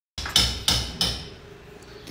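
Three sharp knocks about a third of a second apart, each ringing briefly and fading, with quieter sound after them.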